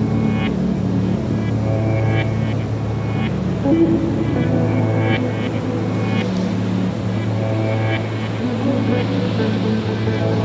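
Slow, calm instrumental relaxation music: a steady low drone with soft pitched notes sounding every second or two over it.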